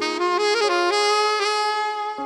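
Saxophone playing a legato melody. It comes in right at the start, steps through a quick run of notes, then holds a long note, over a steady sustained accompaniment tone.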